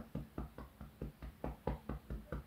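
Fingertips tapping rhythmically on the body in EFT tapping: a steady run of light taps, about four a second.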